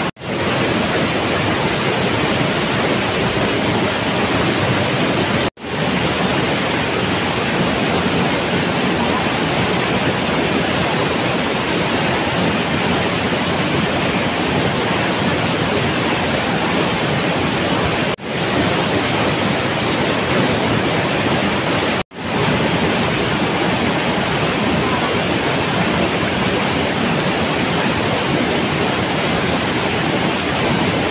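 Waterfall crashing into a rocky pool: a loud, steady rush of falling water that cuts out for an instant four times.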